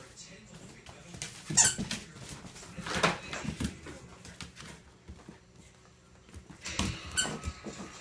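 Husky puppy at play with its red ball on a tile floor: a few short, sharp squeaks in clusters, the loudest about a second and a half in, more around three seconds and again near seven seconds.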